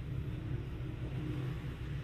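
A steady low rumble in the background, with no distinct event.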